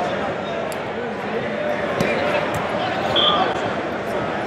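Crowd chatter from many voices filling a large hall, with a sharp knock about two seconds in.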